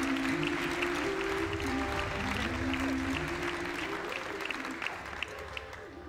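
An audience applauding over music with long held chords; the clapping dies down near the end.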